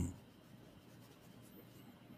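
Near silence: faint room tone in a small room, after a man's voice cuts off right at the start.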